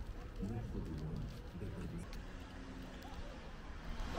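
Faint voices of people talking at a distance, over a low steady outdoor rumble.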